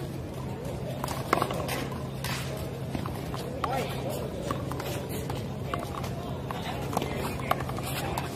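One-wall handball rally: a few sharp smacks of a rubber ball struck by hand and rebounding off the concrete wall, the loudest about a second in and others spread through the rally.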